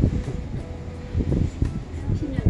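Low rumble and uneven wind buffeting on the microphone inside a moving cable-car cabin, with a faint steady hum during the first second.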